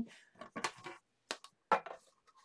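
A few short, soft taps and scrapes as a stack of plastic cutting plates and rubber mats is handled and pushed along the platform of a manual die-cutting machine.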